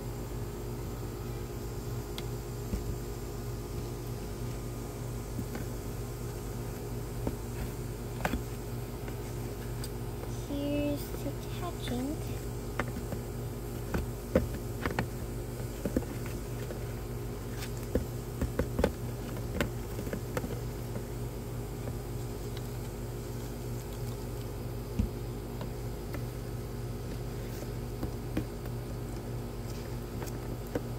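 Metal spoon tapping and scraping against the plastic of a toy fizzing reactor in scattered short clicks, busiest in the middle of the stretch, over a steady low electrical hum.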